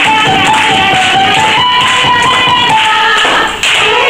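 Violin playing a lively melody over keyboard accompaniment, with the audience clapping along to the beat.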